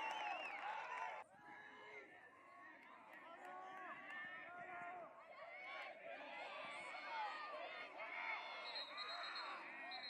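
Many overlapping voices of players and sideline spectators shouting and calling out across a lacrosse field, broken off suddenly about a second in and then carrying on.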